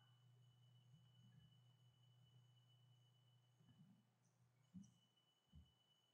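Near silence: faint steady hum of room tone, with a few very faint short knocks in the second half.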